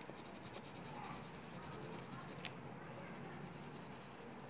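Faint scratching of a pen drawing strokes on paper, with one sharp click about two and a half seconds in.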